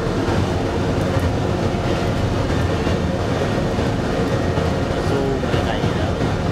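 Cremation furnace burning a coffin with its door open: a steady, loud, low rumble of burner and flames.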